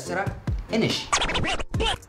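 Hip-hop style backing track with turntable scratching: several quick up-and-down pitch sweeps in the second half.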